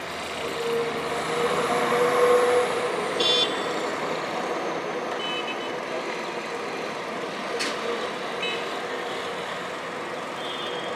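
Morning road traffic in a city street: a vehicle's engine swells past, loudest about two seconds in, over a steady traffic hum. A few short high beeps sound through it.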